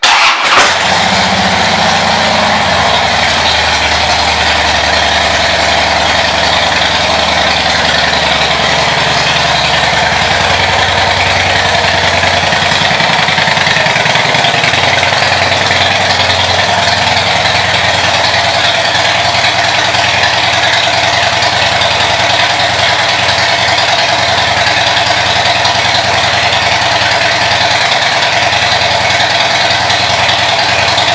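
2011 Harley-Davidson Heritage Softail Classic's V-twin engine starting and idling through aftermarket exhaust pipes. It catches right at the start and its idle wavers for the first several seconds before settling into a steady, loud idle.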